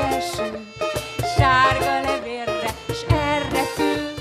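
A small acoustic band playing an instrumental passage: a violin melody over strummed acoustic guitar, with regular percussion beats underneath.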